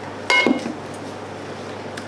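A glass bottle set down on a wooden table: one short clink with a brief ring about a third of a second in, then quiet room tone.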